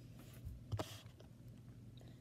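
A quiet room with one short, faint click or knock a little under a second in.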